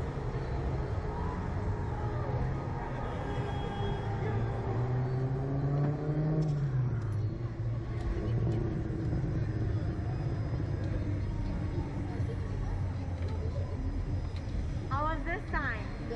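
Slingshot ride's machinery humming steadily as the capsule is lowered back to the platform, its pitch rising and then falling about six seconds in. A high warbling sound comes in near the end.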